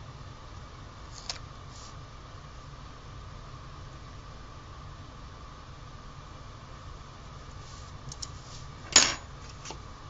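Steady faint background hum with a few light taps of metal tweezers on paper as a sticker is placed, then one sharp click about nine seconds in as the tweezers are set down on the table, followed by a couple of lighter ticks.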